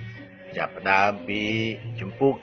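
A man's voice in Khmer with a sing-song, chant-like delivery over a steady low background music bed, after a brief pause at the start.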